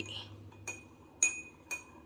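A metal teaspoon stirring coffee in a drinking glass, clinking against the glass three times with a short ring after each clink.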